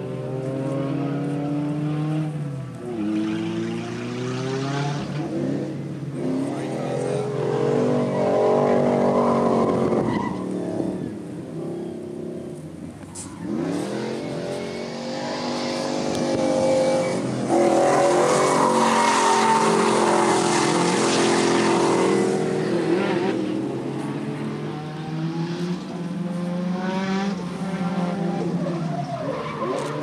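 Car engine revved hard over and over, its note climbing and falling every few seconds, with tyres screeching as the car slides sideways in a drift. The tyre noise is loudest around the middle.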